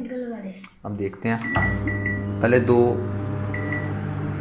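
Dawlance microwave oven: keypad beeps as its buttons are pressed, then the oven starts a heating cycle and runs with a steady hum, with another short beep near the end.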